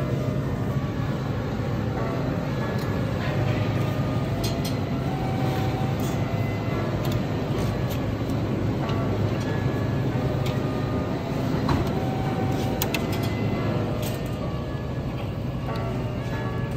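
Steady low hum of a supermarket's refrigerated dairy cooler, with faint music and a few light clicks over it.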